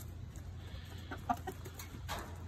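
Chickens clucking, with a short run of clucks a little over a second in.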